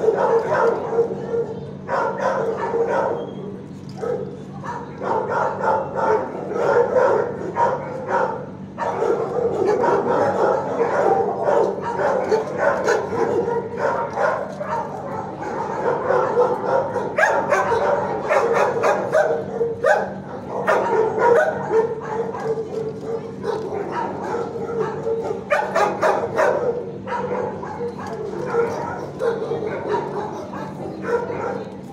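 Many shelter dogs barking and yipping at once in a kennel block, a continuous overlapping din that swells in several louder surges, over a steady low hum.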